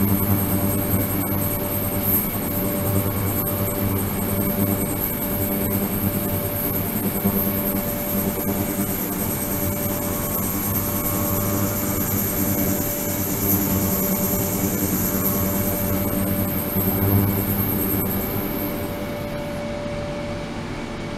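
Ultrasonic cleaning tank running: a steady hiss with several high-pitched tones over a low hum. The highest tones cut off shortly before the end as the ultrasonic output stops.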